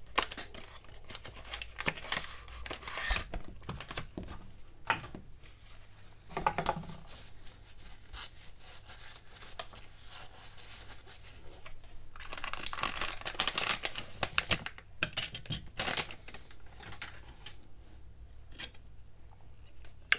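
Packaging being opened by hand: a cardboard box slid open, then a foil bag and a clear plastic sleeve crinkling and rustling as a new replacement back glass is unwrapped. Irregular rustles and small clicks, with the longest, loudest stretch of crinkling about twelve seconds in.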